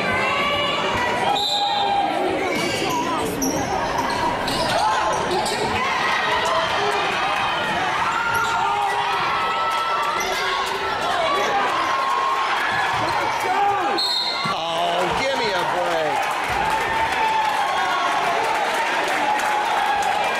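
Basketball being bounced on a hardwood gym floor during a game, under a steady background of indistinct crowd voices in a large gymnasium.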